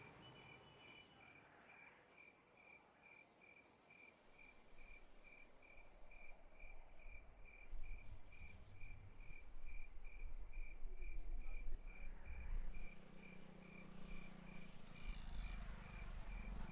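Crickets chirping in a steady, even rhythm of about three chirps a second. Under them a low rumble builds from about four seconds in and becomes the loudest sound.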